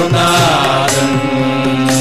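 Carnatic devotional bhajan music: sung melody over sustained harmonium notes, with a phrase gliding down about half a second in and then held. The mridangam and kanjira drum strokes mostly drop back during this held phrase and resume just after.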